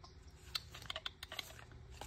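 A handful of faint, irregular light clicks and taps as paper and cardstock journal pieces are handled on a craft cutting mat.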